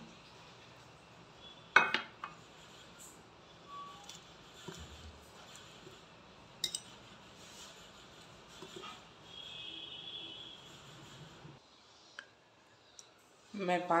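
A steel spoon clinking against a glass bowl as turmeric and salt are added to mushrooms in water and stirred: a few sharp clinks, the loudest about two seconds in and another near the middle, with quiet handling between them.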